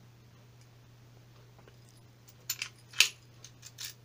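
A few short, sharp metallic clicks and clinks of a mortice deadlock and its metal parts being handled on a desk, loudest about three seconds in. Before them there is only a low steady hum.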